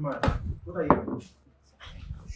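A knife chopping on a cutting board at a kitchen counter, a cluster of knocks in the first second and more near the end, with a person's voice heard briefly.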